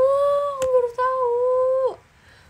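A young woman humming two long held notes at about the same pitch, with a short break between them about a second in. A single sharp click sounds under the first note.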